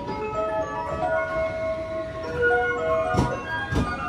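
An electronic chime melody plays steadily. Near the end come two loud clacks about half a second apart, as the wheels of the arriving 283 series train cross a rail joint.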